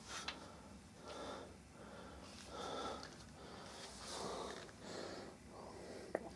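Faint breathing through the nose close to the microphone: several soft breaths in and out, with a light click near the start.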